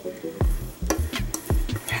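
Silicone spatula scraping melted chocolate out of a bowl into a stainless steel mixing bowl of batter, with a run of low thumps about two or three a second starting about half a second in.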